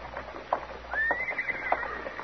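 Radio-drama street sound effects: horse hooves clip-clopping in sharp, unevenly spaced knocks, with a thin high tone held for about a second from halfway through.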